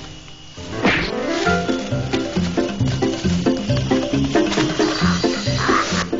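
A tiger growls about a second in, over background music with a steady, evenly repeating beat.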